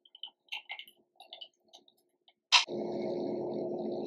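A few faint light ticks, then about two and a half seconds in a sharp click and a steady low hum with hiss: the background room and microphone noise of the narration recording.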